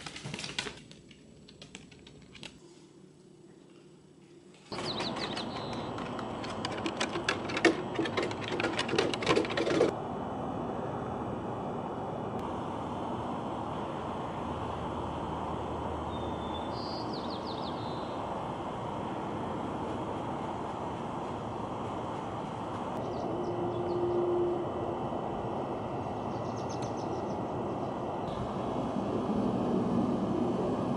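Small dogs' claws clicking rapidly on a hardwood floor for the first ten seconds, with a quiet pause partway. Then steady outdoor background noise, with a short bird chirp in the middle.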